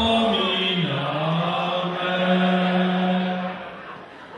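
A man's voice chanting a drawn-out response in the manner of a church litany: the pitch steps down about a second in, then holds on one long note that fades near the end.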